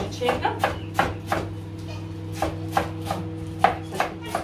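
Sharp knocks at an uneven pace, about three a second, like chopping on a board, over a steady low hum.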